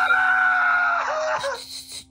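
A boy's long, high-pitched screaming cry, held for about a second and a half, then breaking into a few shorter sobs, heard through a phone's speaker on a video call. It is a sudden emotional outburst.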